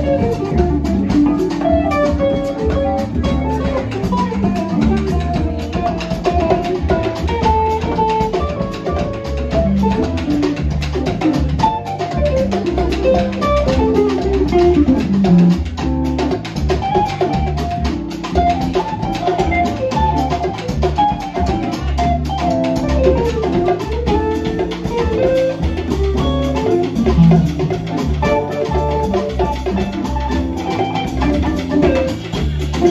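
Live jazz band: an electric guitar plays a solo line of quick single-note runs that climb and fall, over drum kit and keyboard accompaniment.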